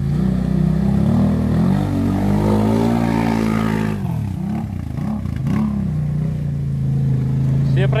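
ATV engine revving hard as it ploughs through a deep mud puddle, water and mud spraying. The pitch climbs over the first three seconds, then drops and wavers as the machine passes close by, and settles into a steady running note near the end.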